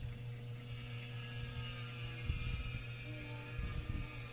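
Steady low electrical hum, with a few faint soft knocks about two seconds in and near the end.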